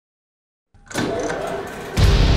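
Silence, then about a second in an engine-like mechanical sound effect starts, part of an animated intro logo.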